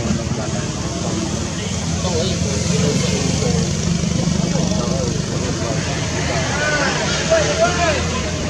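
Indistinct voices over a steady low hum, with a few short rising-and-falling calls late on, the loudest a little after seven seconds in.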